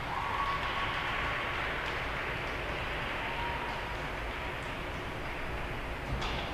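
Audience applauding, an even clapping that swells at the start, with a thin steady high tone lasting about a second near the start and a fainter one midway through.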